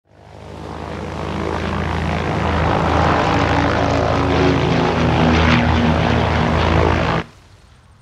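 Propeller airplane engine droning, fading in over the first couple of seconds, holding steady and loud, then cutting off abruptly about seven seconds in.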